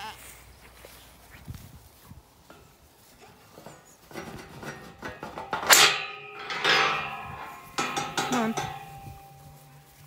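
Galvanised steel field gate being unlatched and worked open: a series of metal clanks and rattles with a ringing tone. The loudest clank comes about six seconds in.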